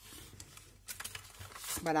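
Clear plastic packaging sleeve rustling and crinkling as it is handled, with a few light clicks in the second half. A woman says "Voilà" near the end.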